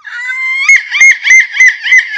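A woman's shrill, seagull-like screeching: one held cry, then a run of short squawks repeated about three times a second.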